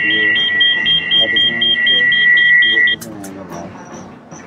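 Fake 'scanning' sound played from a smartphone: a steady high electronic tone with a beep pulsing above it about four times a second, cutting off suddenly about three seconds in.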